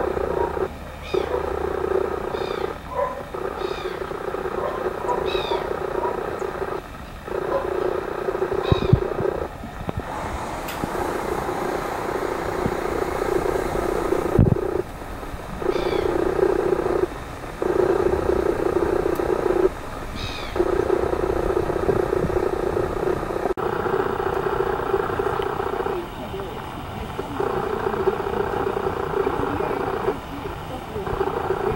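Birds giving short, falling calls again and again over a steady low hum that cuts in and out several times.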